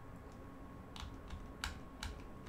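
A few sharp computer clicks, the loudest about a second and a half in, as moves are stepped forward on an on-screen chess board. A faint steady hiss runs underneath.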